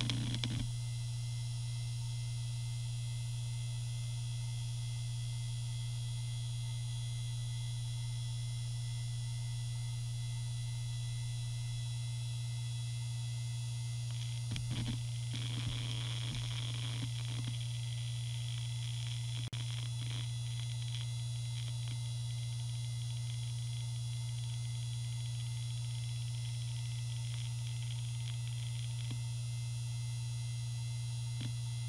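Maxtor D740X-6L 3.5-inch hard drive spinning at speed with a steady hum and a high whine as Windows XP loads from it. A short spell of irregular head-seek noise comes about halfway through, and a single click follows a few seconds later.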